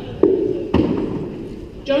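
Two sharp thuds about half a second apart over the low murmur of a large hall, each ringing on briefly, then a man's voice starts near the end.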